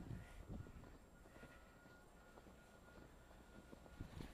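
Near silence: faint low background rumble, with a few soft sounds in the first half-second.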